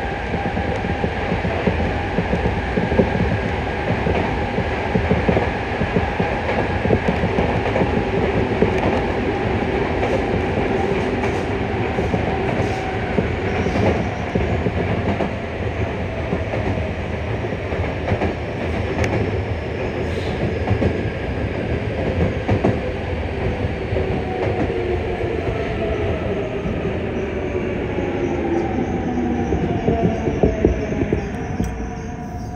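Yokohama Municipal Subway 3000A-series train running through a tunnel: steady rumble of wheels on rail, with the tones of its Mitsubishi GTO-VVVF inverter and traction motors. Over the last several seconds the tones fall in pitch as the train brakes for a station.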